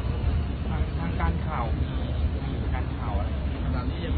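A man speaking over a steady low rumble of outdoor background noise.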